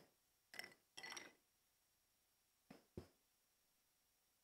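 Faint sounds of a person drinking from a glass: a couple of sips in the first second or so, then two light clinks a little under three seconds in.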